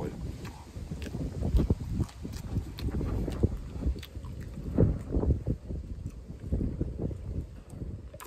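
Wind buffeting the microphone in uneven gusts, with close-up chewing and mouth sounds from eating fries.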